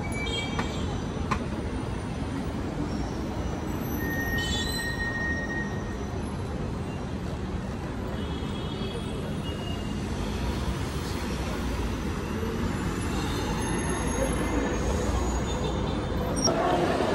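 City street traffic noise, a steady rumble, with a city bus driving past close by towards the end.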